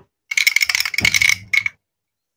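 Hard plastic toy grape halves clicking and clattering as they are handled and set down in a wooden crate. It is a rattling run of about a second with a slight ring, then one shorter clatter.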